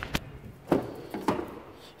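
A pickup's front door being opened by hand: a few short clicks and knocks from the handle and latch, the loudest about a third of the way in.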